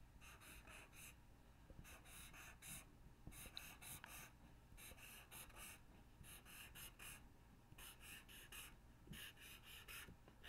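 Faint marker strokes on paper, in quick clusters of short strokes with brief pauses between them, as small squares are drawn one after another.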